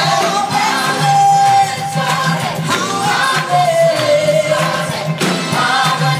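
Gospel choir singing in full voice with band accompaniment, heard live from the audience in a large hall, with long held notes that slide between pitches.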